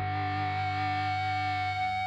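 Music: a single distorted electric guitar chord, played through effects pedals and held steady without new strokes, as a song's intro.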